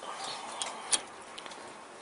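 Faint background hiss with a few light clicks, the sharpest about a second in.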